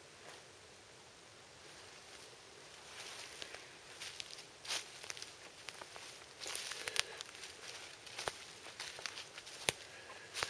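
Footsteps through forest undergrowth, leaves and brush rustling, with a few sharp snaps, starting about three seconds in and growing more frequent.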